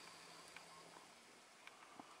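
Near silence: room tone with a faint low hum and a couple of faint ticks.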